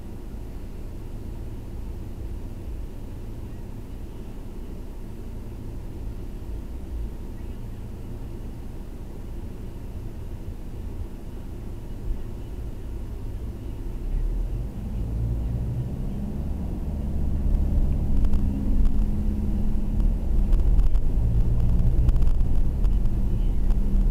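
Mercedes car's engine and road noise heard from inside the cabin: a steady low hum while stopped in traffic, growing louder about halfway through as the car pulls away and gathers speed.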